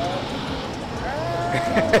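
A person's drawn-out vocal sound that rises in pitch and then holds for about a second, starting about halfway through, over a steady outdoor background noise.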